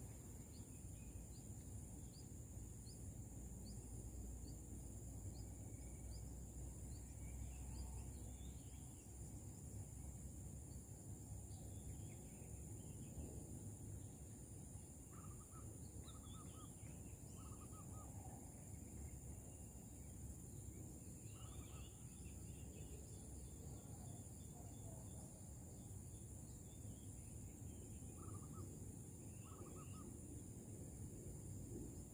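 Faint outdoor ambience of scattered bird calls over a steady high-pitched insect drone, with a few short calls repeated in pairs and threes in the second half.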